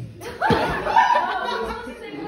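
People laughing loudly, starting about half a second in, with a voice among them.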